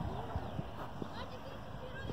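Distant voices shouting across an outdoor football pitch during play, with a couple of faint sharp knocks.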